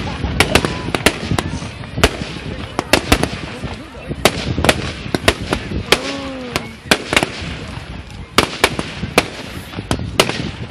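Fireworks going off in a display: an irregular run of sharp bangs and crackles, about three a second.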